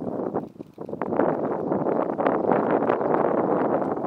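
Wind buffeting the camera's microphone: a loud, gusty rumbling rush that dips briefly about half a second in, then holds strong.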